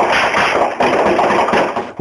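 A rapid string of gunshots, coming so fast they run together, picked up by a home security camera's microphone. It stops shortly before the end.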